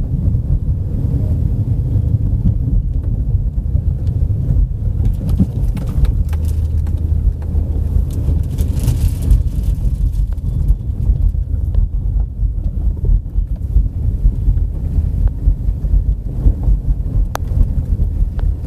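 Car driving: a steady low rumble of engine and road noise heard from inside the cabin.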